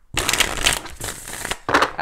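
A deck of tarot cards being shuffled by hand: a rapid flutter of cards slapping against each other for about a second and a half, then another short burst near the end.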